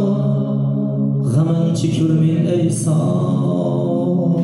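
Live male singing through a microphone and PA, holding long notes over electronic keyboard accompaniment; the pitch shifts about a second in and again near the end.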